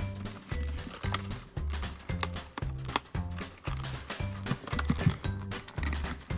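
Background music with a steady beat: a repeating bass line with percussion.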